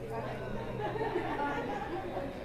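Indistinct chatter of several people talking at once, with overlapping voices and no single clear speaker.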